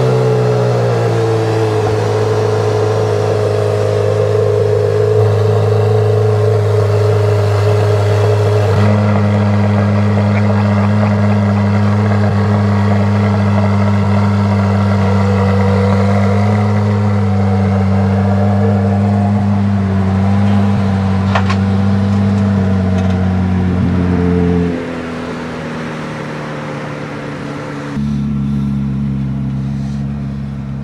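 Corvette C8 Z06's 5.5-litre flat-plane-crank V8 running at a high, steady idle just after start-up, then dropping to a lower idle about five seconds before the end. Its note changes again near the end as the car is driven down off the car carrier.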